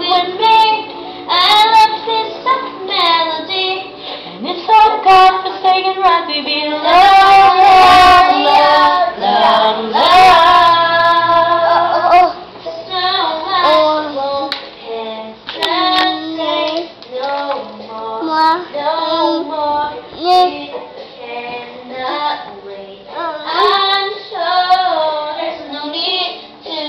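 A child singing a pop song along with a woman, the voices loud and close to the microphone, with brief breaths between phrases.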